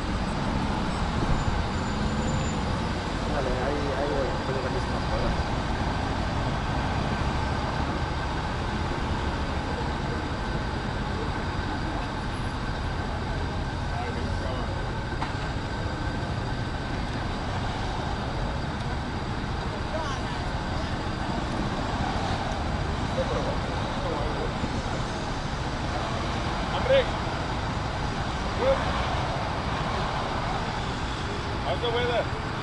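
Steady road traffic at a city junction: cars and a motor scooter running and passing in a continuous rumble, with two short loud sounds near the end.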